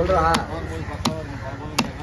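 Large broad-bladed knife chopping red snapper into chunks on a wooden chopping block: about four sharp chops, unevenly spaced.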